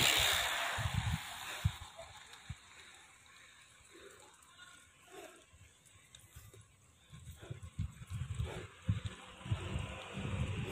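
Wind buffeting a handheld phone's microphone while cycling, heard as irregular low rumbles and thumps that fade after the first couple of seconds and return in the last few.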